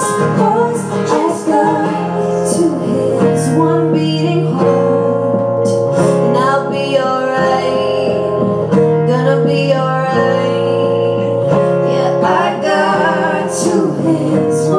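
Live pop song performance: guitar playing under a woman's singing voice, with long held notes.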